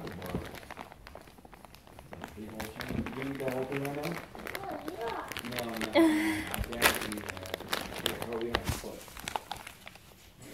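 Indistinct voices talking, with rustling and a few sharp knocks from the camera being handled, the loudest about six and seven seconds in.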